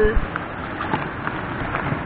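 Mountain stream water running steadily over rocks, an even rushing hiss.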